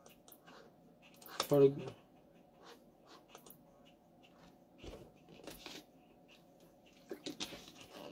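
Mostly quiet small room. A brief voiced sound comes about a second and a half in. Faint clicks and handling noises follow, including a plastic water bottle being drunk from and set down near the end.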